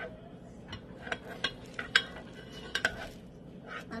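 A spoon clinking and knocking against a cooking pot while stirring: a string of light, irregular clinks.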